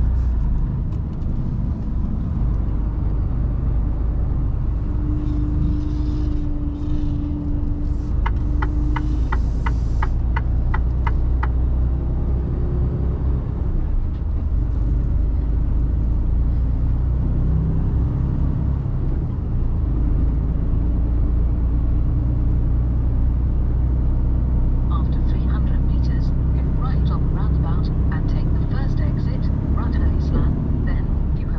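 Mercedes Actros truck's diesel engine and road noise heard inside the cab, running steadily at driving speed. About a third of the way in comes a run of about ten quick, even ticks, roughly three a second, from the turn signal.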